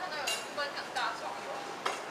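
Busy restaurant clatter: dishes and cutlery clinking among background chatter. A sharp clink comes near the end.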